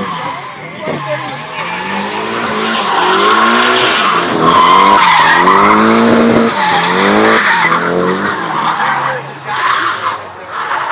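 A car spinning its tires in a burnout: the engine revs up and down over and over against a hiss of tire squeal, building to its loudest in the middle.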